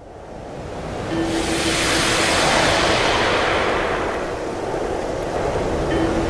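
Rushing waterfall water, a steady noise that fades up from silence over the first two seconds and then carries on.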